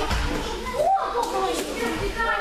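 Overlapping children's voices and chatter in a large training hall, with one voice rising in pitch about a second in.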